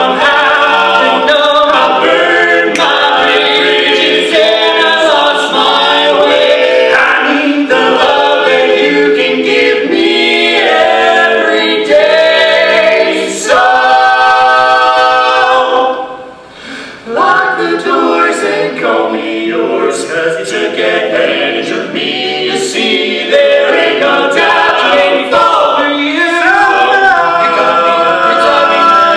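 Male barbershop quartet singing a cappella in four-part harmony. About fourteen seconds in they hold one long chord, break off briefly, then sing on.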